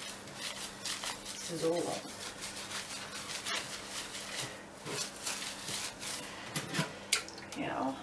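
A hand rubbing dish soap into the wet, matted pile of a shaggy faux-fur rug: a run of soft, uneven rubbing and squishing strokes.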